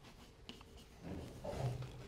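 Chalk writing on a blackboard: faint scratching strokes and a light tap as letters are drawn, busiest in the second half.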